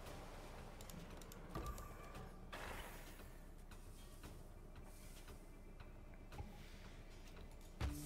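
Quiet online slot game sound effects: faint clicks and a short chime as the reels spin and stop.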